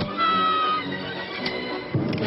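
Cartoon soundtrack music with a cat meowing once about a quarter second in, a single drawn-out cry. A sudden thump comes right at the end.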